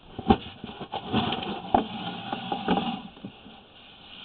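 Scattered knocks and clicks over a low rustle: handling noise from working the sewer inspection camera's push cable, three sharper knocks standing out, about a second apart.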